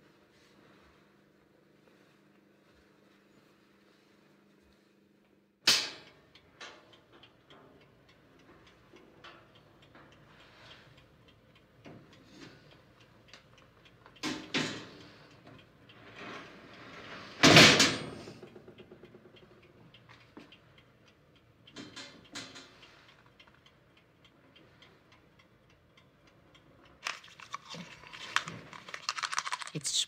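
Objects being handled in a room: scattered clicks and knocks after a quiet start, with a sharp loud knock about a third of the way in and a louder one a few seconds later, then a busier patch of small noises near the end.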